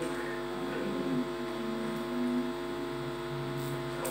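Steady electrical mains hum from the microphone and sound system: a low buzz of several steady tones, with faint room noise under it.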